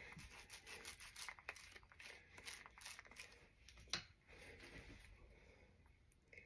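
Faint rubbing and scratching from a foam ink roller worked over the cut face of a halved artichoke, with one sharper click about four seconds in.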